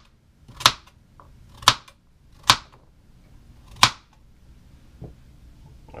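Kitchen knife chopping carrots on a plastic cutting board: four sharp knocks about a second apart, then a fainter one near the end.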